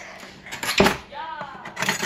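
A metal spoon clinking and scraping against a container, with one loud clink a little under a second in and lighter clicks near the end.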